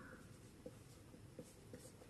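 Faint marker strokes on a whiteboard, writing a number and underlining it, heard as a few short, quiet strokes over near-silent room tone.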